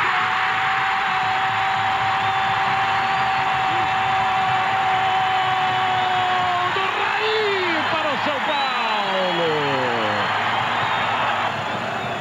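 Football commentator's long drawn-out goal shout held on one steady note for about seven seconds, then a run of falling cries, over continuous stadium crowd noise. It is the call of a goal just scored.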